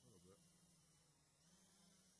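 Near silence with a faint steady low hum, and one brief voiced syllable from a person right at the start.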